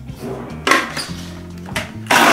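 Background music with two short knocks, one about two-thirds of a second in and one near the end, from a plastic blender jar and lid being handled and fitted before blending.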